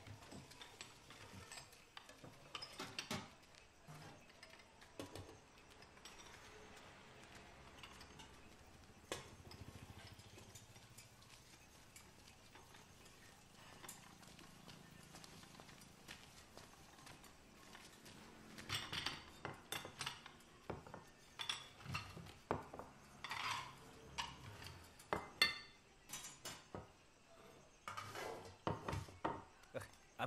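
Plates and cutlery clinking and knocking on a wooden table as a waiter sets dishes down, sparse at first and busier in the last third.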